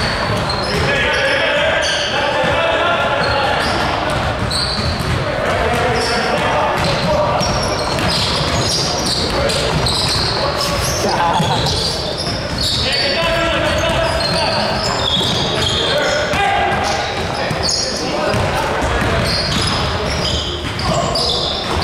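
Basketball being dribbled on a hardwood gym floor, with sneakers squeaking in short high chirps as players run and cut, the sound echoing around a large gymnasium.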